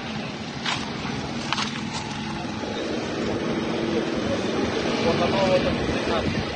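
On-site handheld recording: a steady low outdoor rumble with people talking indistinctly, and two short clicks in the first two seconds.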